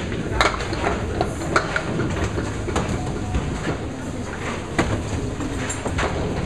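Candlepin bowling balls rolling down wooden lanes with a steady rumble, and candlepins clattering as they are struck, with several sharp clacks spread over the few seconds.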